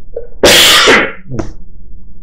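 A man sneezing once, loudly: a single sharp, noisy burst lasting about half a second, starting about half a second in.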